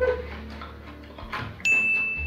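Subscribe-button animation sound effect: a single bright electronic ding that starts suddenly about one and a half seconds in and rings for under half a second.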